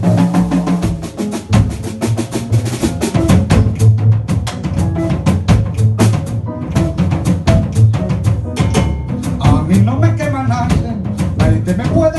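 Live Afro-Peruvian jazz band playing an instrumental passage: a dense, driving percussion groove from drum kit and cajón over upright bass, piano and electric guitar.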